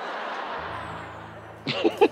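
Studio audience laughter, a rolling crowd noise that fades away over about a second and a half. A low steady hum joins about half a second in.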